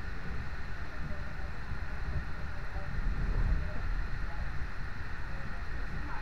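Passenger train running, a steady low rumble heard from inside the carriage.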